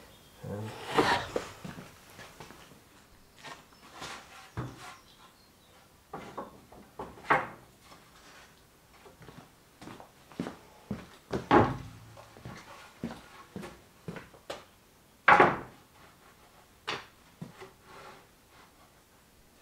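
Sawn ash boards being handled and stacked on a shelving rack: a series of separate wooden knocks and clunks at irregular intervals, the loudest about three-quarters of the way through.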